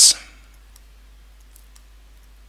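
The tail of a spoken word, then a few faint, sparse clicks over quiet room tone.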